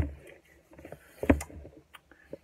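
Two sudden dull thumps, one at the start and a louder one just over a second in, with light knocks and rustling between: hands and forearms bumping the table-top close to the phone.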